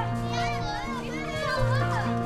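Many children's voices chattering and calling over background music with steady held notes and a low bass line.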